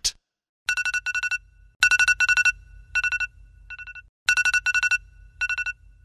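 Smartphone alarm going off: rapid trains of high electronic beeps, repeating in short bursts with brief gaps, starting under a second in.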